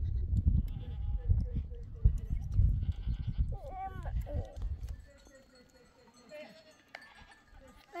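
Small livestock bleating once, a short wavering call about halfway through, over a gusty low rumble of wind on the microphone that dies down after about five seconds.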